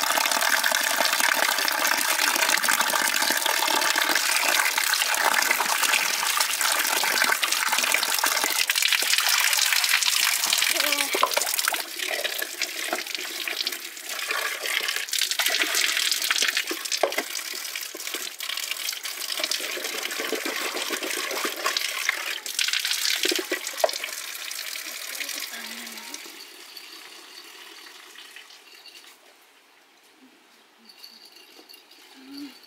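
Water from a village tap spout pouring steadily onto a concrete basin while potatoes are rinsed by hand in a steel bowl, with occasional clinks of the bowl. The rush of water fades away over the last few seconds.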